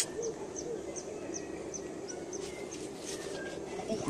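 A small bird chirping: a quick, evenly spaced series of short high chirps, about three or four a second, over a steady low background noise. There is a brief click at the very start.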